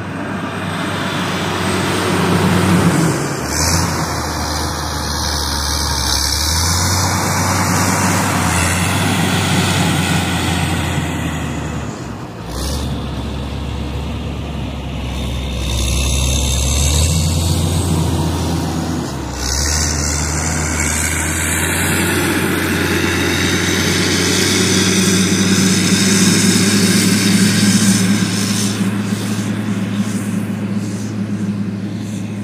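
Caterpillar 120K motor grader's diesel engine running steadily under load as the machine works close by, moving past and then coming back. It grows louder toward the end as the grader approaches.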